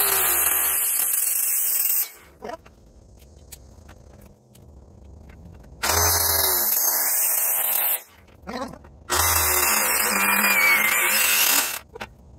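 Corded circular saw cutting into a six-by-ten white oak timber in three runs of two to three seconds each, with short quiet pauses between them.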